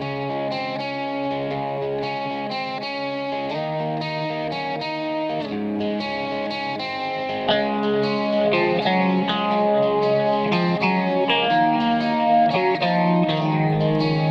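Instrumental intro of an Indonesian pop song, led by guitar with effects and held chords. It grows fuller and louder about halfway through, with no vocals yet.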